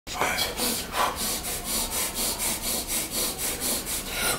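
Rapid, forceful breaths, about three a second, from a bench presser psyching up under a loaded barbell before the lift-off.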